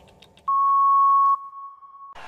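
Electronic countdown beep marking zero: one long, steady high beep starting about half a second in and lasting nearly a second, then dropping to a fainter held tone.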